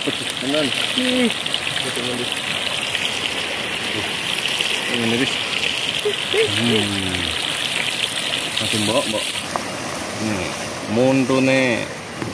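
Fish frying in hot oil in a small pan over a wood fire: a steady sizzle that cuts off suddenly about three-quarters of the way through, when the pan comes off the heat.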